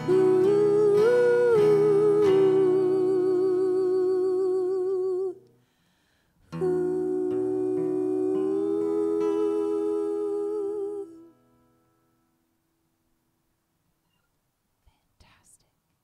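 Wordless vocal 'ooh' sung by several voices in harmony, with vibrato, over acoustic guitar. There are two long held phrases, each about five seconds, with a short gap between them. The music fades out at about eleven seconds.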